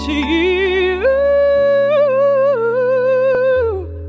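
A woman singing a long held note with vibrato, stepping up to a higher pitch about a second in and sliding down near the end, over sustained electronic keyboard chords and bass.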